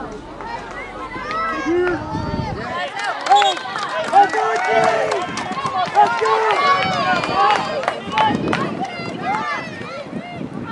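Several voices shouting and calling out at once on a soccer field, overlapping and unintelligible, with a few sharp knocks in between.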